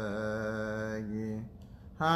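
A man's solo voice chanting an Ethiopian Orthodox liturgical prayer, drawing out long, slowly wavering notes. The chant stops about one and a half seconds in.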